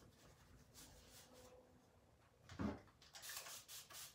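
Mostly near silence, with a brief low sound about two and a half seconds in. Near the end comes a run of faint short swishes from hand brushwork on a chalk-painted wooden buffet.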